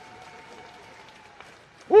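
Audience applauding, fairly faint and steady.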